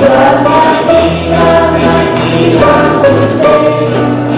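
Live music for a folk dance: a group of voices singing together, accompanied by violin and guitar, playing continuously.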